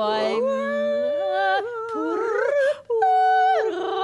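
Wordless improvised singing and humming: long held and sliding notes, at times two voices overlapping, a low steady note under a higher gliding one, with a fast wavering trill near the end.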